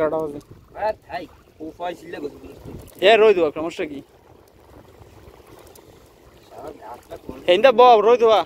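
A person's voice calling out in short bursts, loudest about three seconds in and again near the end, with a stretch of faint steady background noise between.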